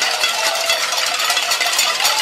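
A crowd banging many pots and pans at a cacerolazo protest: a dense, chaotic metallic clanging with no pause.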